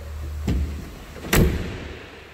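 Jeep Gladiator pickup's tailgate being shut: a lighter knock about half a second in, then the tailgate latching with one solid thud a little before the end.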